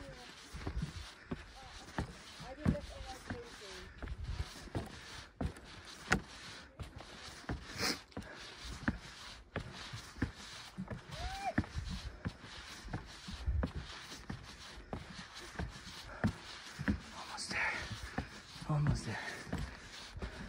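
Hiking boots climbing wooden trail stairs: irregular knocks and thuds of footfalls on the timber treads.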